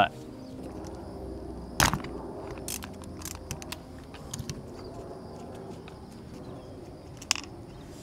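Wrenches clicking and tapping against a WRX's metal shifter assembly while a 10 mm nut is loosened and its bolt held with a 17 mm wrench. The loudest is one sharp click about two seconds in, followed by scattered lighter clicks over a faint steady hum.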